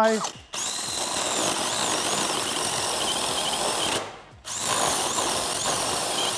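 Cordless drill on its lowest speed spinning a Metex PipeChamf chamfering cutter against the end of a 110 mm plastic soil pipe, shaving a chamfer onto it. It gives a steady whirring with a whine that wavers up and down, stops briefly about four seconds in, then runs again.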